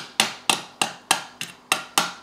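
A small watchmaker's hammer tapping lightly and evenly on the tinplate body of a Hornby O gauge toy locomotive, about three taps a second, each with a brief ring. The taps drive a folded-back body tab in tight.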